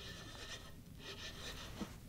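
Faint rubbing and rasping of an ice-fishing rod's reel being cranked to bring in a hooked fish, with a small click near the end.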